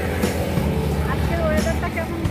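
Low, steady rumble of road traffic, with a voice heard over it.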